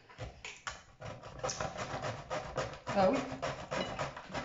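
Rapid, irregular clicking and scraping of kitchen utensils against dishes, several strokes a second.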